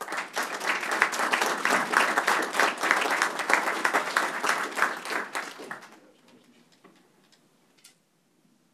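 A small audience applauding with hand claps for about six seconds, then dying away.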